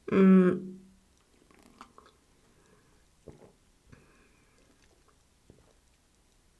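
A brief voiced sound right after a sip of beer, then faint lip smacks and small mouth clicks close to the microphone as the beer is tasted.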